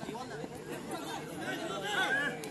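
Many overlapping voices of spectators and players chattering and calling out around a football pitch.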